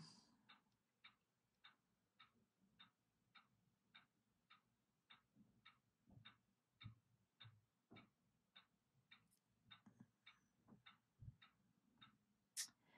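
Near silence with faint, even ticking, a little under two ticks a second, like a clock, and a few soft low thumps.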